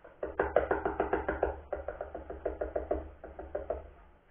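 Fingers tapping on a guitar under-saddle piezo pickup in an ukulele's bridge, played through a small Joyo practice amplifier as a quick run of drum-like knocks, about five a second. The taps coming through the amp are a test showing that the newly wired pickup works.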